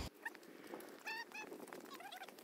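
A bird calling faintly: short pitched notes, one near the start and a quick cluster of them about a second in.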